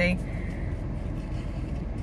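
Steady low vehicle rumble heard from inside a car cabin.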